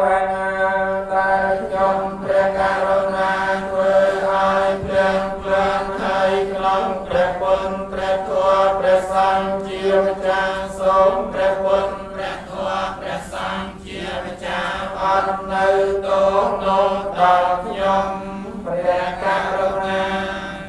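A Buddhist monk's voice chanting on one steady held pitch, the syllables changing in an even rhythm.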